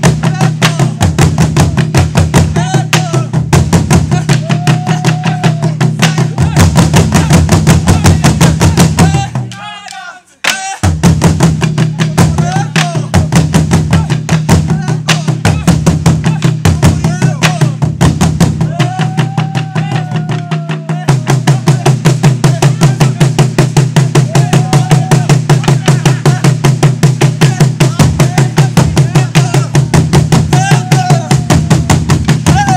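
An ensemble of Burundian ingoma drums, tall wooden drums with skin heads, beaten with sticks in a fast, even, driving rhythm, with voices calling out over it. The drumming breaks off abruptly about ten seconds in and picks up again a second later.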